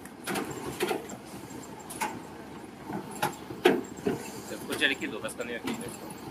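Low, indistinct voices over a steady background hiss, broken by scattered sharp clicks and knocks.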